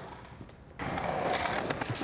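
Skateboard wheels rolling on concrete: a steady, rough rolling noise that starts suddenly under a second in, with a light click near the end.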